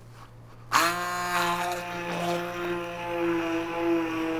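Handheld immersion blender switched on about a second in, its motor running with a steady whine as it churns the watermelon flesh inside the rind, mostly liquefying it.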